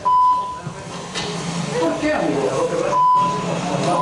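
Two short, steady, high-pitched TV censor bleeps laid over a man's shouted speech, one at the very start and one about three seconds in, blanking out words in a heated argument.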